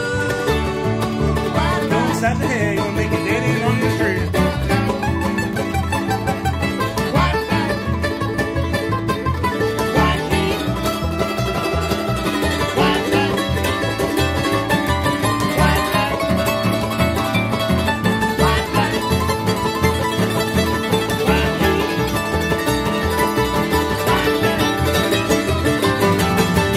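Bluegrass string band of upright bass, mandolin, acoustic guitar and banjo playing an instrumental passage with a steady beat, the banjo to the fore.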